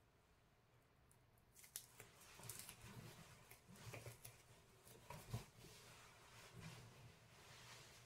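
Faint rustling and handling of a fabric cape and a small adhesive Velcro strip being pressed on at the collar, with scattered soft ticks and one slightly sharper tick about five seconds in.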